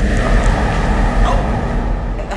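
Loud, deep rumbling rush of a smoke-and-confetti burst as a person vanishes in a magic-trick exit. A few faint held tones ring over the rumble.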